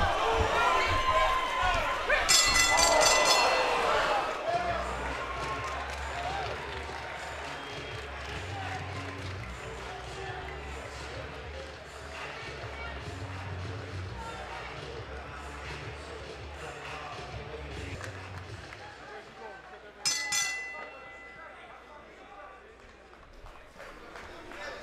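Boxing ring bell struck in a quick series of clangs about two seconds in, ending the round, over arena voices. The bell rings again in a shorter series about twenty seconds in.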